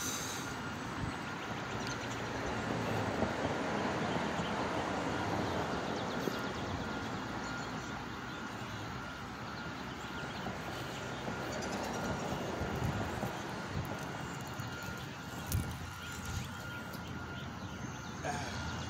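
Steady outdoor background noise: an even rumbling hiss with a faint, thin, steady high tone running through it, and a single short knock near the end.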